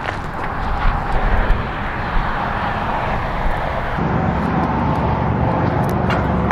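Steady rush of freeway traffic, with gusts of wind on the microphone. About four seconds in the sound turns duller, with more low rumble.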